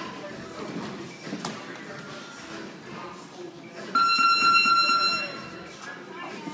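Boxing gym round-timer buzzer sounding once, a loud steady electronic tone for about a second and a quarter starting about four seconds in, marking the end of the sparring round. Background voices in the gym around it.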